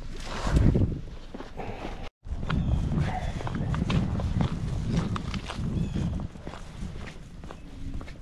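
Footsteps walking, with rustling and handling noise close to a body-worn camera. The sound drops out briefly about two seconds in.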